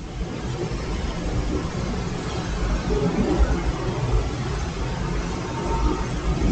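Steady outdoor ambience of a hushed tennis crowd between serves: an even low murmur and rumble with no distinct strokes.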